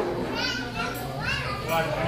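Several young people's voices chattering and calling out, with high-pitched calls that rise and fall, over a steady low hum from the stage.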